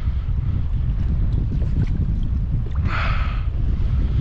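Wind buffeting the microphone in a steady low rumble, with a short hiss about three seconds in.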